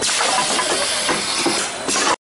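Rotary K-cup capsule filling and sealing machine running: a loud, steady hiss with a few faint knocks from its mechanism, dipping briefly near the end.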